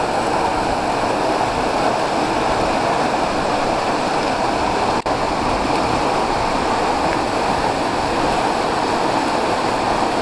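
Waterfall pouring down a rock face into a plunge pool: a steady, even rush of falling water.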